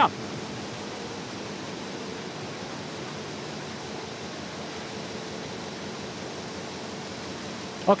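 Steady running noise of a Koenig & Bauer Rapida 106 sheetfed offset press in production: an even hiss with a faint hum underneath.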